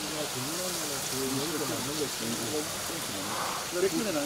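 Steady rush of a mountain stream, with faint voices talking underneath.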